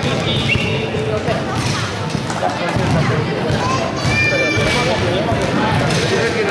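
Indistinct voices of spectators and players calling and chattering, echoing in a large sports hall, with a basketball bouncing on the court.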